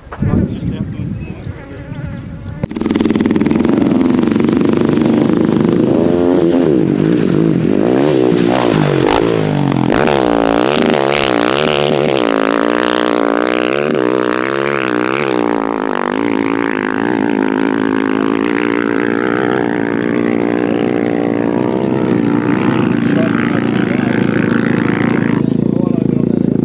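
KTM 500 EXC-F single-cylinder four-stroke dirt bike engine running hard, coming in loud about three seconds in. Its revs rise and fall over and over under changing throttle.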